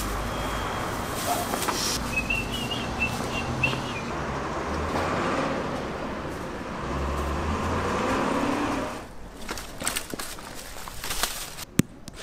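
Outdoor street background: a steady rumble of passing traffic with a few short high chirps early on. It drops away to quieter ambience after about nine seconds, with a couple of sharp clicks near the end.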